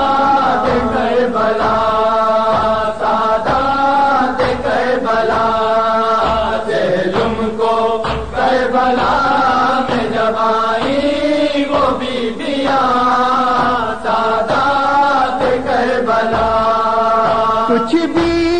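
A noha, an Urdu mourning lament, chanted by a reciter's voice through horn loudspeakers in long held lines, with a faint steady low beat underneath.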